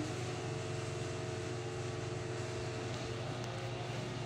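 A steady, low mechanical hum that does not change, with a fainter higher drone over it.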